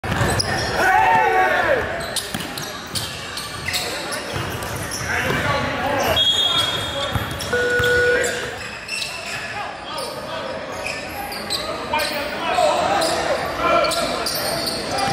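Echoing gymnasium sounds: basketballs bouncing on a hardwood court again and again amid indistinct voices in a large hall.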